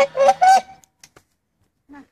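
Swan honking in three quick, nasal calls, then falling quiet for about a second: a hungry swan calling, complaining for food, as it is hand-fed.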